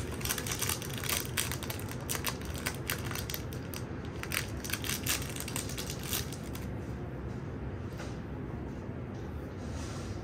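Aluminium foil being handled and crumpled in the fingers: a dense run of crinkling crackles that thins out to scattered crackles after about six seconds.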